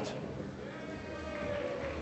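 Faint, drawn-out call or cheer from a voice in the audience of a large hall, over low crowd murmur, starting about half a second in and fading before the end.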